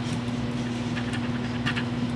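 A few faint clicks from a Heritage Rough Rider .22 revolver's action being worked with the cylinder out, over a steady low hum. The cylinder hand's spring has snapped off, so the hand can no longer turn the cylinder.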